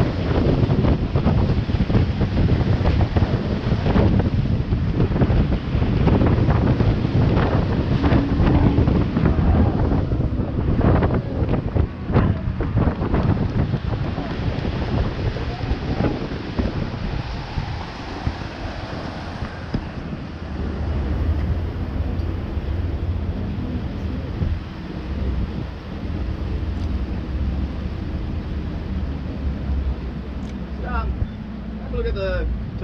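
Fast tour boat under way, wind buffeting hard on the microphone and water rushing and slapping at the hull as it powers through churning whitewater. In the second half the water noise eases and a steadier low engine drone comes through as the boat runs over calm water.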